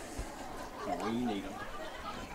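Faint background chatter of people talking, with one distant voice heard briefly about a second in.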